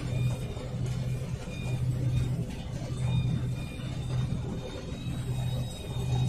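New Holland TX66 combine harvester running while it cuts and threshes wheat, heard from the cab: a steady low drone that swells and dips about once a second, with a faint high whine coming and going.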